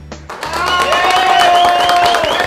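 Hand clapping and applause starting loudly about a third of a second in, with voices cheering and music over it.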